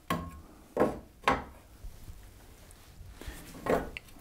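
A spirit level knocking against wooden benchwork framing as it is handled and lifted off: about four short, sharp knocks spread across a few seconds.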